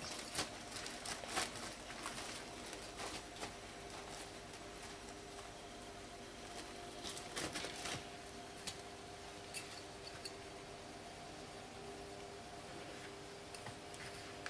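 Foil helium balloon crinkling and rustling in short bursts as a ferret tugs and drags it across carpet, busiest in the first two seconds and again about seven seconds in, with a few single ticks later. A faint steady hum sits underneath.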